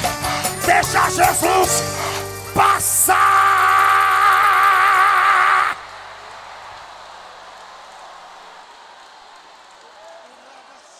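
Live church worship band music with voices, ending on a loud held chord that stops abruptly about halfway through. A much quieter noise of the hall fades out after it.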